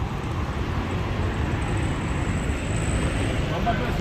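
Steady roadside traffic noise: a low rumble of passing cars on a busy road, with no distinct events.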